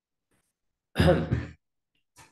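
A man's voice saying one short word, 'ji', about a second in, out of dead silence.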